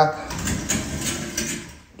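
Aluminium-framed sliding shower door rolled open along its track, a rattling slide lasting about a second and a half.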